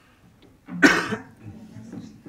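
A person coughs once, loudly, about a second in, followed by faint low voices.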